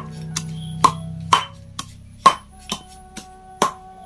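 Pestle pounding in a small mortar, crushing ingredients with sharp knocks about twice a second.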